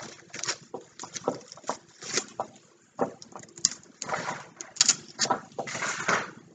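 Handling noise from artificial flowers and tulle being arranged: irregular rustles and light clicks, with short quiet gaps.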